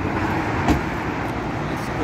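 Steady road traffic noise from passing cars, with one brief click about two-thirds of a second in.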